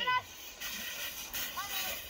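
A child's brief call at the start, then the steady hiss of a plastic sled sliding down packed snow, with faint children's voices near the end.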